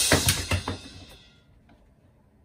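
A quick burst of drum-kit hits with a crash cymbal, several strikes in the first moments, the cymbal ringing out and fading over about a second and a half.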